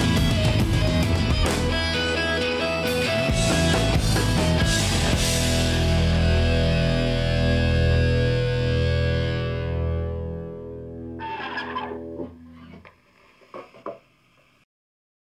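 Rock band playing live, distorted electric guitars, bass and drums, coming to the end of a power-pop song: after a few seconds of full playing the band lands on a final chord that is held and rings out, fading away over several seconds. A few short sounds follow as it dies, then it goes quiet apart from a couple of small clicks.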